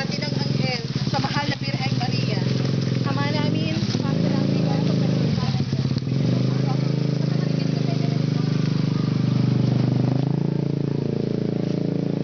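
Small motor scooter engine running steadily at low speed close by, its pitch dipping and rising slightly, with people talking over it in the first few seconds.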